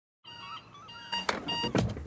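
A moment of dead silence at the join between two TV adverts, then the quiet sound effects of the next advert: faint chirps, a few sharp clicks and short electronic beeps.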